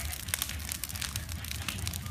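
Large wood-branch bonfire burning, with frequent sharp crackles and pops from the burning sticks over a steady low rumble of the flames.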